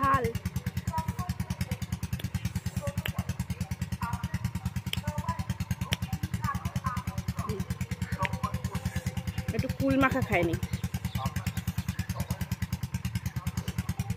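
An engine running steadily with a fast, even low pulsing, under faint voices. A woman says a word about ten seconds in.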